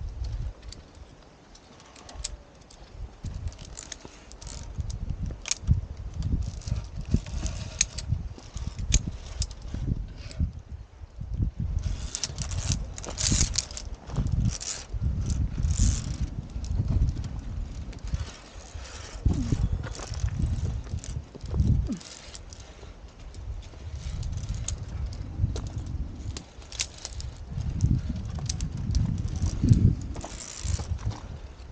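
Irregular low rumble of wind and handling on the camera's microphone, with scattered sharp metallic clicks typical of via ferrata carabiners clipping and sliding on the steel safety cable.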